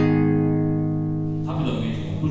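A guitar chord ringing out and slowly fading after a strum. A voice comes in about a second and a half in.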